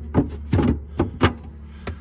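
Five sharp knocks and clunks, about one every half second, from a boat's hinged floor hatch being handled, over a steady low hum.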